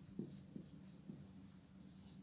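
Faint squeaking and scratching of a marker pen writing letters on a whiteboard, a quick series of short strokes.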